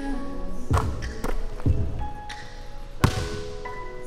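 Music playing over a basketball bouncing on a hardwood gym floor: a few thuds in the first two seconds, then a louder, sharper bang about three seconds in.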